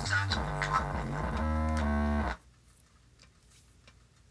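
Music with a heavy, sustained bass line played through a bare, unenclosed Dayton Audio woofer driver. It cuts off suddenly a little over two seconds in, leaving near silence with a few faint ticks.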